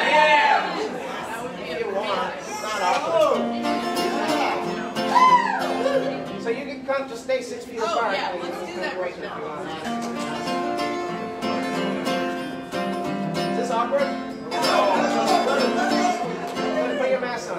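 Acoustic guitar strummed unplugged, away from the microphone, with people's voices in the room over it.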